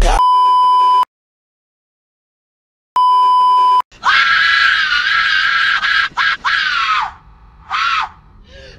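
Two steady high beeps, each about a second long, with two seconds of silence between. Then a person's long high-pitched scream, held for about three seconds, with a shorter cry near the end.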